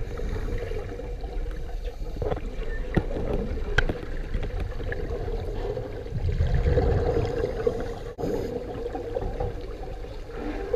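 Underwater sound through a submerged camera: a continuous low, muffled rumble of moving water with a steady droning hum, and a few sharp clicks about three and four seconds in.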